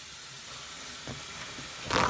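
Steady low hiss of room noise, then a single short knock near the end.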